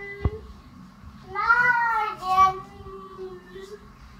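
A young child's high-pitched wordless vocalising: one drawn-out, wavering sound lasting under a second, then a brief second one, with a single knock just after the start.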